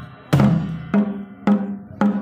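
Traditional Nepali drums beaten with sticks in a steady rhythm, about two strikes a second, each strike ringing on with a low tone.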